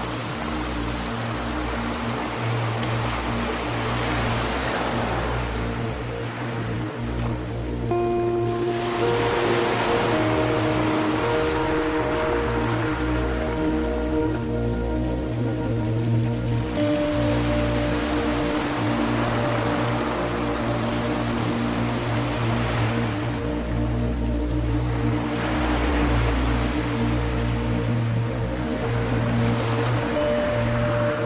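Ambient music: long held notes that change every few seconds over a low steady drone. Ocean waves wash in and out beneath it, swelling and fading every several seconds.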